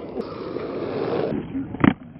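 Inline skate wheels rolling on concrete, then one loud, sharp thud near the end as the skater lands on top of a high concrete ledge.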